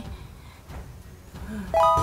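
A short, bright chime sound effect with a few quick rising notes that comes in suddenly near the end, after a stretch of low background.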